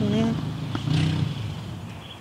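A loud car's engine and exhaust rumbling low, fading steadily over the two seconds.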